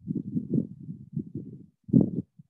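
Low, irregular thuds of footsteps on a rubber gym floor while two dumbbells are carried, then a louder thump just before the end as the dumbbells are set down.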